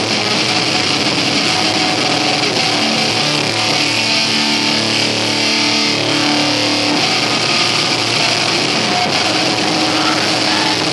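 Live blackened death metal band playing: distorted electric guitars holding long notes over a dense, unbroken wall of loud sound.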